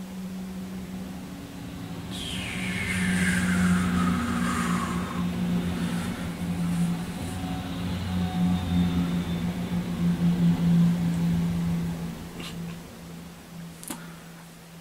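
A train passing: a low steady drone that swells over the first few seconds and fades near the end. A couple of seconds in, a high tone glides down over about three seconds.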